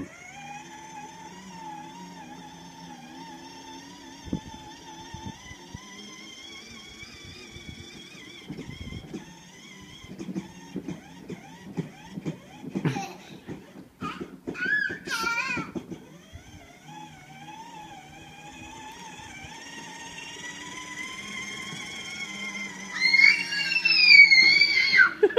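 Battery-powered ride-on toy car's electric motor and gearbox whining steadily while it drives over grass, the pitch wavering with the load. Through the middle come uneven knocks and a child's brief high vocal sounds, and voices rise near the end.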